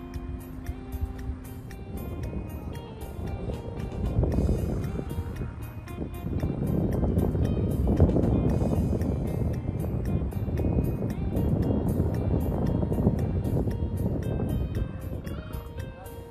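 A sedan's engine and tyres working through deep snow as the car pulls out. The noise builds about two seconds in and is loudest from about six seconds until near the end, over background music.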